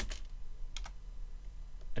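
Typing on a computer keyboard: a few separate keystrokes with pauses between them, as an email address is entered.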